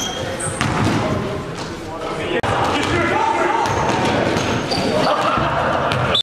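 Basketball game sounds in a gym: the ball bouncing on the hardwood and short high sneaker squeaks, with players' voices echoing in the hall.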